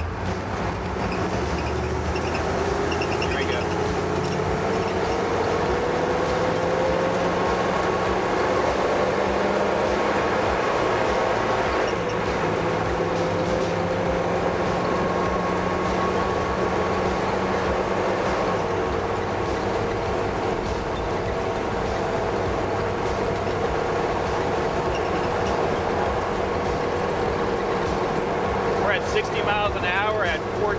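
The 6.5-litre V8 diesel of a 2000 AM General M1097A2 Humvee accelerating at full throttle through its 4L80 four-speed automatic, heard from inside the cab. Its rising whine climbs, drops back as the transmission shifts up, climbs again, then settles to a steady tone at highway cruise. Wind and road noise come through the open back.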